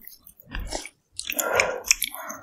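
Close-miked ASMR chewing and crunching of a mouthful of cold noodles with young radish kimchi, in two bouts: a short one about half a second in and a longer, louder one in the second half.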